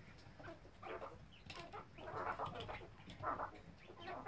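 Coturnix quail giving a string of short, soft calls around the feeder as they feed.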